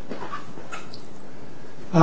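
Steady room and recording hiss in a pause between spoken sentences, with a few faint short sounds.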